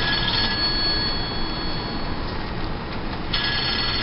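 Cabin noise inside a moving Ford shuttle van: steady engine and road rumble, with a thin, steady high-pitched electronic whine over it that fades in the middle and returns near the end.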